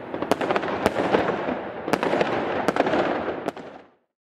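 Fireworks crackling, with about five sharp louder pops scattered through, then fading out near the end.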